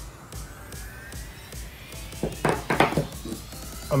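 Background music with a slowly rising tone, and a few brief louder sounds a little past halfway.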